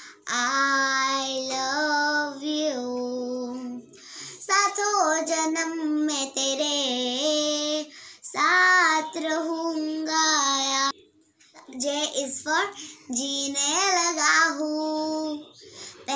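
A girl singing alone without accompaniment, in four phrases with short breaks about four, eight and eleven seconds in.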